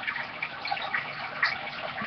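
Faint rustling from handling a trading card held close to the webcam microphone, with a small tick about one and a half seconds in.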